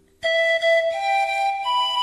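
Slow instrumental music: after a brief hush, a single high melody line enters about a quarter second in and climbs over three long held notes.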